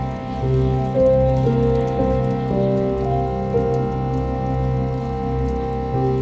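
Slow, calm instrumental music: held notes step through a gentle melody over a steady low drone, with a light patter of rain sounds mixed in.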